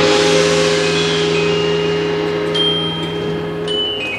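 Small opera orchestra playing without voices: a crash of metal percussion at the start that rings away over about two seconds, above a held low note, with high bell-like notes entering past the halfway point.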